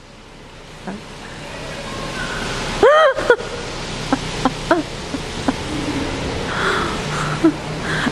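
Heavy rain pouring down just outside an open parking-garage level, a steady rushing hiss that swells over the first few seconds and then holds. A short vocal call cuts in about three seconds in.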